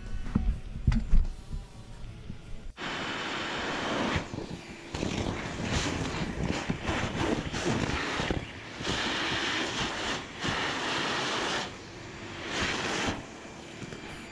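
A few low thumps and the tail of background music, then about three seconds in a gutter vacuum's suction starts suddenly through a long pole-mounted tube. It gives a steady, fluctuating rushing sound with irregular surges as the nozzle pulls wet leaves and debris out of the gutter.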